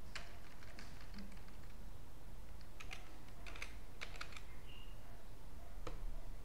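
Computer keyboard being typed on: short runs of key clicks, one early cluster and another about three seconds in, over a low steady hum.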